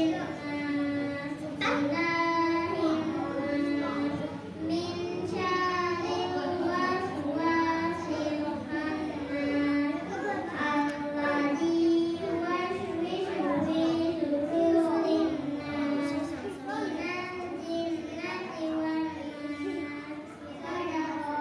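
A young girl reciting the Qur'an in the melodic, sung style of tilawah, with long held notes ornamented with wavering turns and short breaths between phrases.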